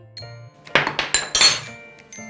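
A metal spoon clinking sharply against a glass mug several times in quick succession as toasted kadayıf is knocked off it into the mug, over soft background music.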